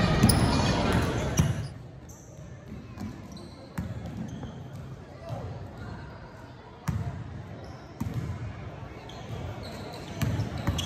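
Basketballs bouncing on a hardwood gym floor over background chatter, with a few separate sharp thuds. The first second and a half is louder and busier, then it suddenly drops off.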